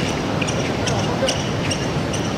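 Fencers' shoes squeaking on the piste during footwork, a quick run of short, high squeaks over a steady hall murmur.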